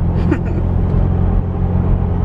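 Steady low rumble of a car driving at speed on a paved road, with engine and tyre noise heard from inside the cabin.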